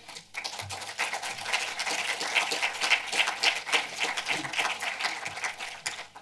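Audience applauding: a dense patter of many hands clapping that starts just after the beginning and thins out near the end.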